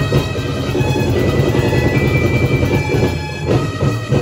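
Loud festival dance music driven by heavy drums and percussion.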